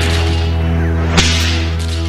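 Western-style gunfire sound effects: a sharp gunshot crack about a second in, with falling ricochet whines, over a steady low drone.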